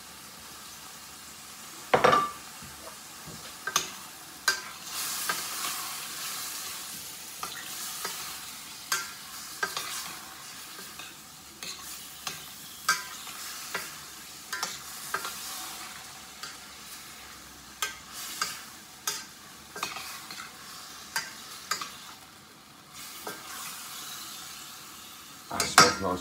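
Marinated chicken, garlic, peppers and onions sizzling in a frying pan as they are stirred, a utensil knocking and scraping against the pan at irregular moments, with one louder knock about two seconds in.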